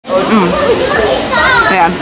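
Mostly voices: a woman's brief "mm" and "yeah" over a busy background of other people talking and children's voices.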